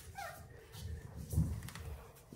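A seven-week-old Havanese puppy gives a short high call that falls in pitch just after the start, followed by a soft low thump about midway.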